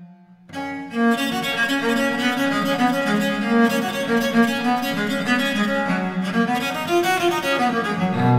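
Solo viola da gamba playing a baroque sonata, unaccompanied. After a brief pause, a new passage of quick bowed notes begins about half a second in and runs on steadily.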